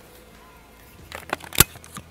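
A run of short, sharp clicks and knocks in the second half, the loudest one near the end, after a quiet first second.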